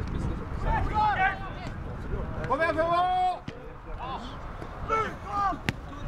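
Football players shouting short calls across the pitch, one longer drawn-out shout in the middle, over a steady low rumble. One sharp knock comes near the end.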